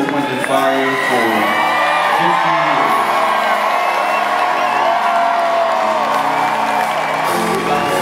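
A live band playing a slow vamp of long held notes, some sliding in pitch, on keyboards and bass. An audience cheers and whoops under it.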